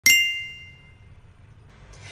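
A single bright, bell-like ding right at the start, ringing out and fading away over about a second.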